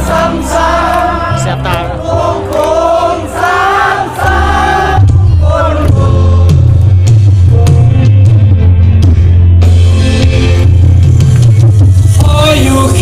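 Live band music with singing, heard from the audience. Voices sing over the band for the first few seconds, then loud bass and drums carry on with less singing.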